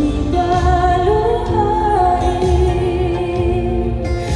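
Slow OPM pop love ballad: a female voice holds long, gliding sung notes over a steady bass and backing accompaniment.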